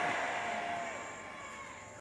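Faint room noise of a large hall, fading steadily, with a faint steady tone that stops about a second in.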